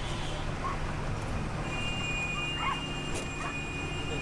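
A few short, high animal calls, dog-like yelps, scattered over a steady low hum and a faint high steady tone.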